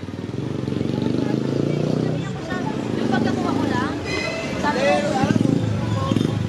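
Motorcycle engines running close by on a busy street, a steady low rumble, with people talking nearby over it from the middle of the clip.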